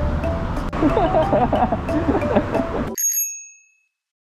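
Street noise with background music, cut off about three seconds in by a single high bell-like ding that rings out and fades.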